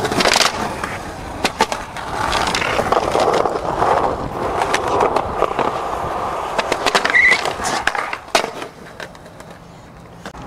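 Skateboard on concrete: sharp clacks of the board at the start, then the wheels rolling steadily for several seconds. A few more sharp clacks come about seven to eight seconds in, after which the rolling gets quieter.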